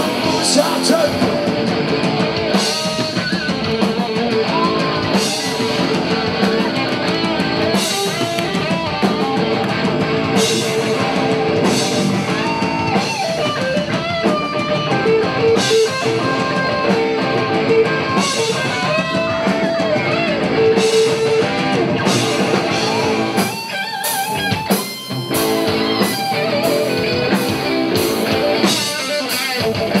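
Live rock band playing electric guitars, bass guitar and drum kit at full volume. The music dips briefly about three-quarters of the way through, then the full band returns with regular cymbal-like hits.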